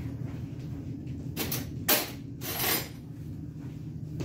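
Kitchen handling sounds as a spoon is fetched: a short scrape, a sharp knock just before two seconds in, then a brief rustle, over a steady low hum.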